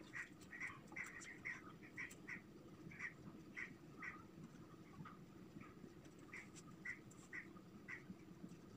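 Whiteboard marker squeaking faintly against the board in short strokes as figures are written: brief squeaks, two or three a second, thinning out in the middle, over a steady low room hum.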